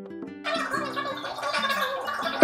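Light background music of plucked notes. About half a second in, a denser, noisier, wavering layer of sound comes in over it.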